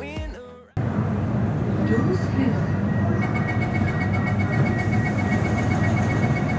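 Background music fades and stops abruptly about a second in, giving way to the steady hum of a C751C metro train standing at a station platform. About three seconds in, a rapid, evenly spaced run of high beeps starts, the train's door-closing warning.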